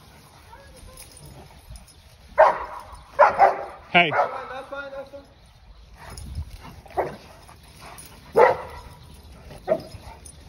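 Cane Corsos barking during rough play: a handful of short barks spaced a second or more apart, starting a couple of seconds in.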